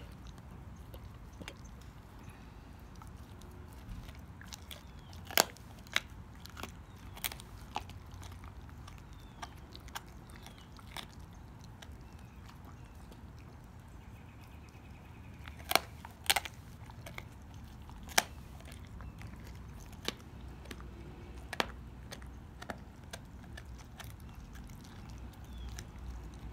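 A dog chewing raw young beef ribs, the soft bones crunching and cracking in irregular sharp bites. The loudest cracks come about five seconds in and a close pair around sixteen seconds.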